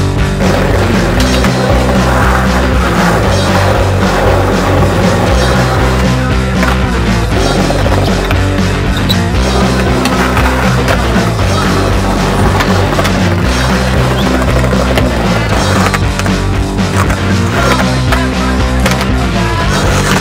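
Skateboard wheels rolling on concrete, with repeated pops and landings of the board, over loud background music.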